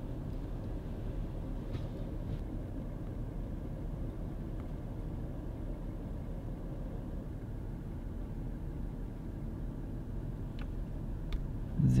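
Steady low rumble inside a Toyota 4Runner's cabin, with two faint clicks near the end.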